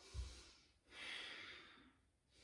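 A woman's audible breath out, a soft hiss of about a second in the middle, while she holds an inverted forearm balance with effort. A short low bump right at the start.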